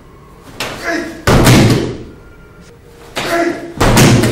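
Twice, a short shout followed a moment later by a loud slap and thud of a thrown martial artist landing on the tatami mat in a breakfall, the second landing near the end.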